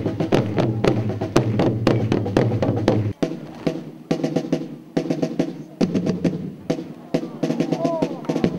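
Marching snare drums playing quick strokes and rolls over steady pitched tones, the drum accompaniment to a flag-waving display; about three seconds in, the low part underneath cuts out abruptly.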